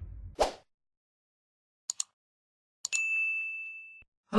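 Edited-in intro sound effects: a brief whoosh, two quick clicks, then a bright ding that rings on and slowly fades.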